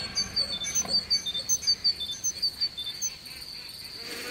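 A small bird gives a rapid run of short, high chirps that jump between pitches, about five a second, and stops about three seconds in. A steady high-pitched insect trill runs beneath it.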